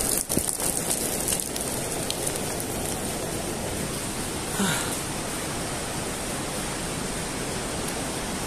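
Steady rain falling, an even hiss, with a short vocal sound about halfway through.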